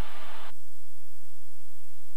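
Steady in-flight cabin noise of a Cirrus SR20: the low drone of its engine and propeller with a hiss of airflow over it. About half a second in, the hiss thins out abruptly and the low drone carries on unchanged.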